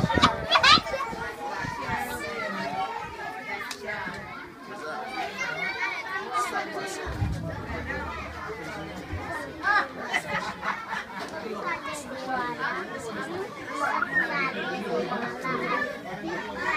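A group of children talking over one another, a busy babble of young voices.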